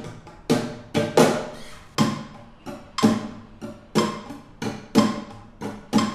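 Nylon-string flamenco guitar played in the abanico triplet rasgueado: strummed chords in groups of three strokes, about one group a second, the first stroke of each group the loudest.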